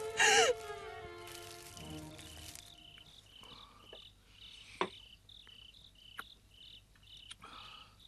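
Crickets chirping steadily, a short high chirp about twice a second, after soft music fades out in the first couple of seconds. A few sharp clicks sound over them, the loudest about five seconds in.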